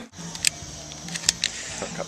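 A steady low hum with a few short, sharp clicks from a small hard object being handled close to the microphone.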